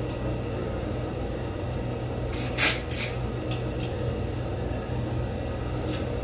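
Aerosol lace adhesive spray can hissing in a burst about half a second long a little over two seconds in, then a second short burst just after, over a steady low hum.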